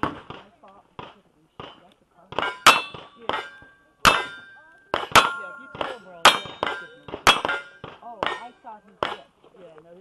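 A string of rifle shots, each followed by the clang and brief ring of a steel target being hit. Some ten shots come fast, often well under a second apart, the ring of one hit still fading as the next shot comes.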